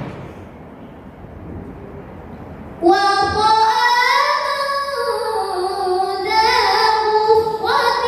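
A girl's solo melodic Qur'an recitation (tilawah). After a pause of nearly three seconds, she begins a long, drawn-out chanted phrase whose pitch rises and falls in ornamented glides.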